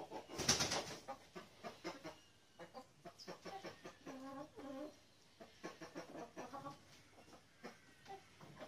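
A flock of backyard hens, gold- and silver-laced Wyandottes among them, clucking in short notes throughout, with two longer drawn-out calls about four seconds in. A short loud burst of noise comes about half a second in.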